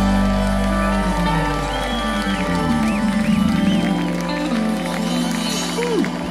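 A rock band's final chord ringing out and slowly fading, with the Hammond B3 organ and bass held underneath, while the crowd cheers and whistles.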